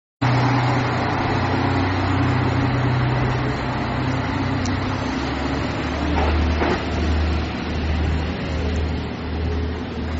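Steady diesel engine drone heard from inside the cabin of a dual-mode vehicle, a minibus built to run on road and rail. About five seconds in it gives way to a deeper diesel engine hum that swells and dips, with a few faint clicks.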